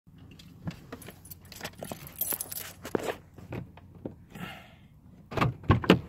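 Handling noise of a phone recording with its lens covered: irregular clicks, rubbing and knocks against the microphone, a brief hiss, then several heavy thumps near the end.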